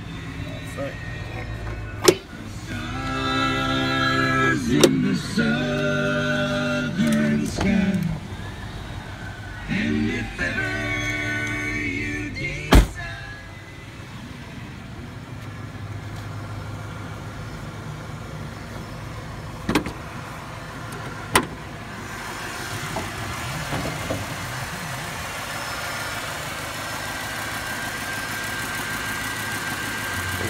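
1996 Chevrolet Impala SS's stock 5.7-litre V8 revved three times, each rev held for a couple of seconds and then dropped back, then idling, quiet on its all-original exhaust. Several sharp knocks, the loudest about 13 seconds in.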